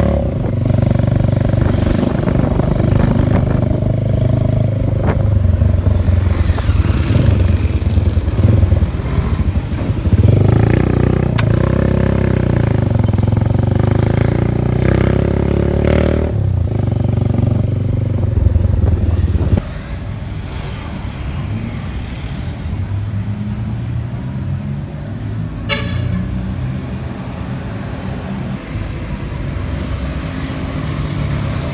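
Motorcycle engine running with street traffic noise, a steady low drone. About two-thirds of the way through it drops suddenly to a quieter level of street sound.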